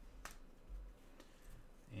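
Trading cards handled in nitrile-gloved hands: one sharp click about a quarter second in, then faint handling rustle.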